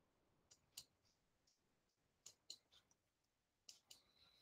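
Near silence broken by about eight faint, sharp clicks, several coming in quick pairs.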